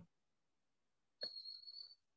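Near silence in a video-call pause, then a faint click a little over a second in, followed by a thin, steady high-pitched tone.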